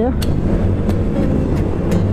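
Motorcycle engine running steadily at cruising speed, heard from the rider's own bike.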